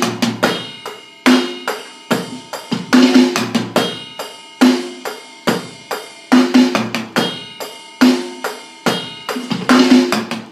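Electronic drum kit played in a steady rock beat, bar after bar, each bar ending in a quick sixteenth-note single-stroke fill that lands on a loud cymbal and bass-drum hit about every 1.7 seconds.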